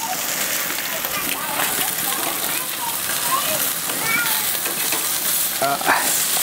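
Whole fish sizzling on the hot oiled cast-iron grate of a Weber Genesis II E-410 gas grill with the lid open: a steady crackling hiss of frying.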